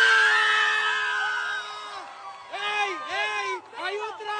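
A woman screaming with excitement: one long, steady, high scream held for about two seconds, then several shorter shrieks that rise and fall in pitch.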